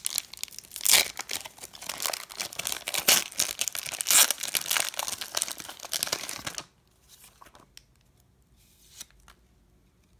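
A foil booster-pack wrapper is torn open by hand and crinkled, with loud crackling rips. The tearing stops about two-thirds of the way through, leaving only faint soft rustles.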